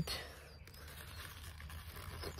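Faint outdoor background with a low steady rumble and no distinct sound event.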